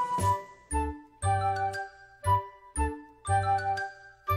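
Logo intro jingle music: a run of short, bright chords with chime-like high notes over bass notes, each chord followed by a brief gap.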